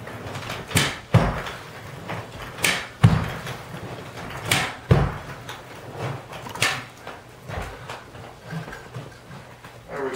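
Hand-operated carpet stretcher being set and pushed along the wall, each stroke a sharp clack followed a moment later by a dull thump, about every two seconds, four times, with lighter knocks near the end.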